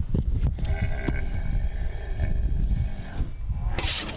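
A rhino's single long, held call lasting about two and a half seconds as it comes round from the anaesthetic, over a steady low rumble.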